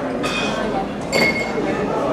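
Two bright clinks of glassware, one about a third of a second in and a louder one about a second in, over the murmur of crowd chatter in a bar.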